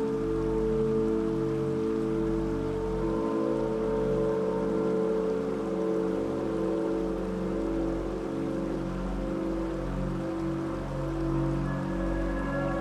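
Slow ambient meditation music of held, slowly shifting synth tones, with a soft rain sound beneath it. A higher tone joins near the end.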